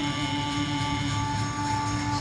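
Harmonium holding a steady chord for about two seconds between sung lines of a devotional-style song, the notes changing just as it ends.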